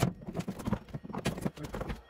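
Hammer blows and wooden wall boards being knocked loose during demolition: a quick, irregular run of sharp knocks and cracks of wood.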